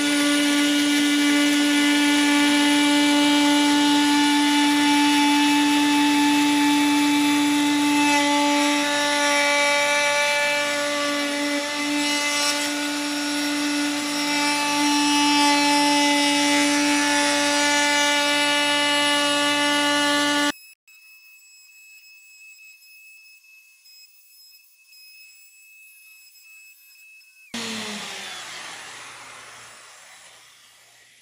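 DeWalt plunge router running at full speed and cutting ambrosia maple along a template: a loud, steady high whine whose pitch wavers slightly as the bit takes wood. It stops abruptly about two-thirds of the way through. Near the end the motor is heard winding down after switch-off, its whine falling in pitch and fading.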